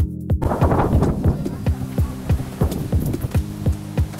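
Background electronic music with a steady kick-drum beat, about three beats a second; a rustling noise joins it about half a second in.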